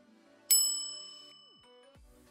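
A single bell ding: it strikes about half a second in and rings out, fading over about a second and a half. It is the notification-bell sound effect of a YouTube subscribe animation.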